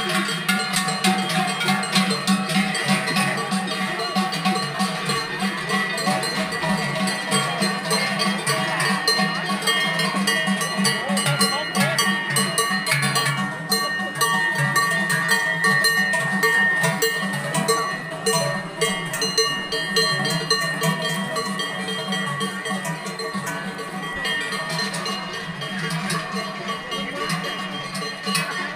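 Large cowbells worn by cows walking past, clanging continuously, many bells ringing together.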